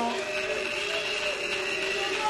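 A group of people in the hall singing together, with several long held notes, interrupting a speech.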